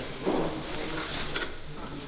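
Faint handling noises: a few light clicks and rustles as a folding ruler is held up and set against a car's underbody.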